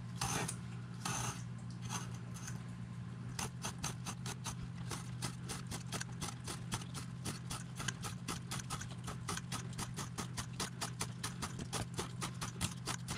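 Scalpel blade scoring the paper face of foamboard against a ruler: short, shallow scratching strokes that settle into a fast, even run of about four or five a second from about three seconds in. The close-spaced cuts break up the inside paper so the board will curve without creasing.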